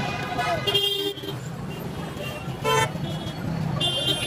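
Busy street traffic with engines running, and a short vehicle horn toot about two-thirds of the way in, the loudest sound here.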